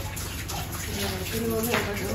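Steady hiss of running or falling water, with a voice speaking briefly about a second and a half in.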